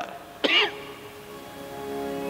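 A man's short vocal sound, like a throat-clearing or cough, about half a second in. Soft music with long held notes starts to come in near the end.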